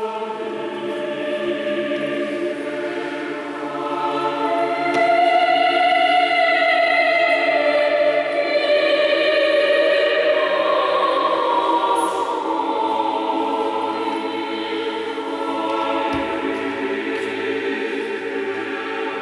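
Church choir singing long, held chords that change slowly and swell louder about five seconds in, ringing in the church's reverberant space.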